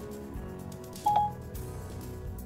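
A single short electronic beep about a second in: Siri's tone through Apple CarPlay as it takes the spoken request. It plays over soft background music.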